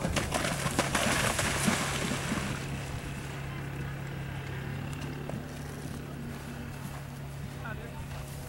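A horse's hooves splashing through shallow water as it canters out, the splashing dying away about two and a half seconds in. A steady low hum runs underneath.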